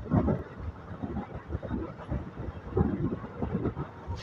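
Express passenger train running, heard from aboard a carriage: a steady low rumble of wheels on the track, with uneven rattling and knocking.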